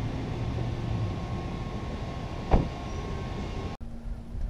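A car door shut with a single loud thump about two and a half seconds in, over steady outdoor background noise.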